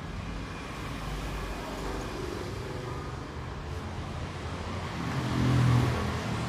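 Steady road traffic noise, with a vehicle passing louder about five seconds in.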